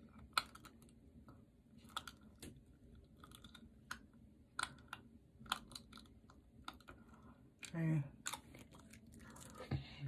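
Byte clear plastic aligner trays being prised at the teeth with fingertips: an irregular run of sharp little clicks and wet snaps as the tight-fitting trays resist coming off. A brief hummed grunt of effort comes about eight seconds in.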